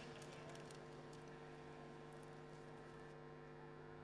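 Near silence: a faint steady electrical hum, with a few faint ticks in the first second.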